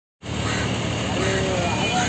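Steady outdoor background noise of a city, a continuous hum and hiss, with faint voices of other people in the second half.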